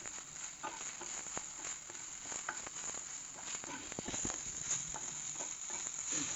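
Okra frying in a non-stick kadhai, stirred and turned with a spatula: a steady sizzle with many short scrapes and taps of the spatula against the pan.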